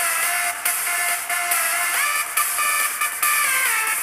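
A home-built 30 kV plasma arc speaker playing an electronic dance track through its open electric arc: thin and tinny with almost no bass, over a steady high hiss.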